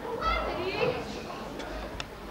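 Indistinct voices speaking on stage, picked up from a distance, with a brief higher-pitched line near the start.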